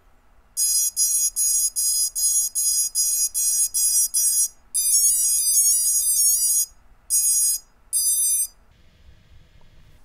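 Brushless drone motors beeping as their BLHeli ESCs run through throttle calibration. A run of about a dozen short beeps comes first, about three a second, then a quick stepping run of tones, then two longer beeps.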